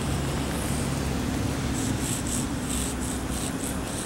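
Sidewalk chalk scratching on rough asphalt pavement: a quick run of short, scratchy strokes from about two seconds in to near the end, as letters are written. Under it runs a steady low background hum.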